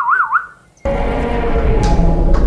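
A short whistled note that warbles up and down about three times. Just under a second in it stops and music comes in loudly, with held notes over a low rumble.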